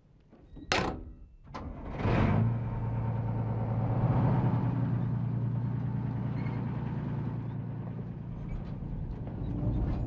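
A vehicle door slams shut about a second in, then a Mamba armoured personnel carrier's engine starts about two seconds in and runs at a steady low pitch.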